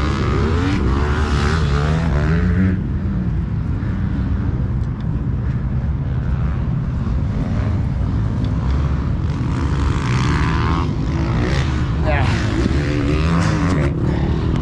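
Motocross dirt-bike engines revving, their pitch rising and falling with the throttle, loudest in the first few seconds and again toward the end, over wind rumbling on the microphone.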